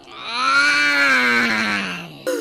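A cartoon child's voice giving one long, drawn-out yawn. The pitch rises a little and then slides down as it fades near the end.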